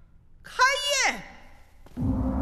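A person's short, high-pitched wordless vocal sound, held for about half a second and then sliding sharply down in pitch.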